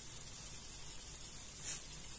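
Tomato slices, onion and peppers faintly sizzling in a frying pan on low heat, with a soft shake of a dried-parsley spice jar near the end.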